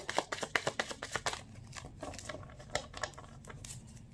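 A tarot deck being shuffled by hand: quick clicking and fluttering of cards, densest in the first second and a half, then sparser and quieter.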